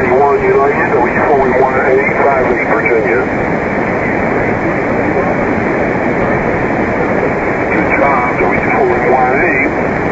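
Shortwave amateur-radio reception on 3816 kHz, in the 80-metre band. A distorted voice comes through heavy static for the first three seconds and again near the end, with steady hiss in between.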